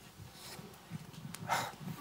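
Quiet room tone with a short, sharp breath into the microphone about one and a half seconds in, as a man draws breath before starting to speak.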